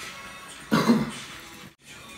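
A short, loud burst from a person's voice about three-quarters of a second in, over faint steady background sound; the audio cuts out abruptly for a moment near the end.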